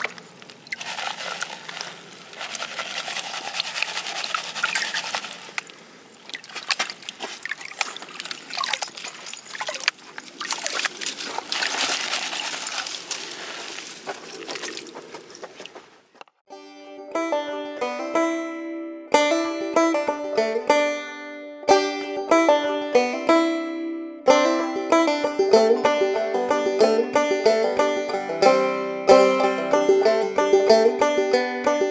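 Water and gravel sloshing in a plastic gold pan as it is worked in a creek. About halfway through this stops abruptly and plucked-string background music of quick picked notes takes over.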